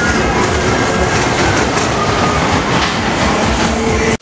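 Cars of a small fairground roller coaster running along the steel track close overhead, a steady, loud rattling rumble.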